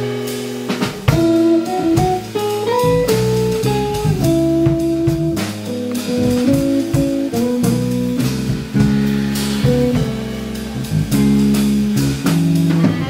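Live jazz combo playing: hollow-body electric guitar over electric bass and drum kit.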